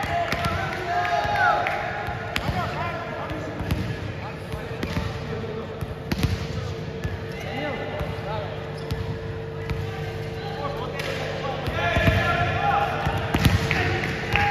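Indoor sports hall during a volleyball match: players' voices call out in a reverberant hall, with scattered thumps of a volleyball bouncing on the court floor and short shoe squeaks, over a steady hum.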